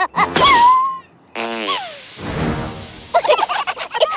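Cartoon slug creature's squeaky, wordless chattering: short rising chirps in the first second, then a falling squeal a little after the middle over a hiss, and more chatter near the end.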